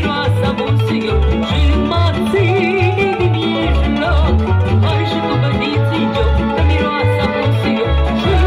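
Live Moldovan folk music: a woman singing with a band of violins and plucked strings over a steady, regular bass beat.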